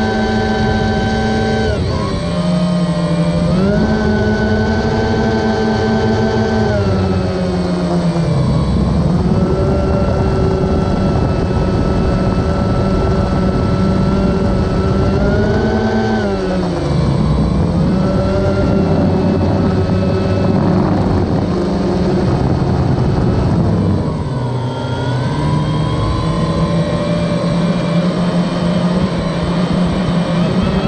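DJI Phantom 1 quadcopter's motors and propellers buzzing loudly, picked up close by a camera mounted on the drone. The pitch of the buzz slides down and back up several times as the throttle changes.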